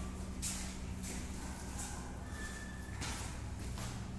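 Quiet room tone through a phone microphone: a steady low hum with a few faint, brief rustles, as of the phone being handled while it is carried.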